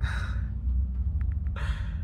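Two short breathy exhalations from a man, one at the start and one near the end, over the steady low rumble of a moving car heard from inside the cabin.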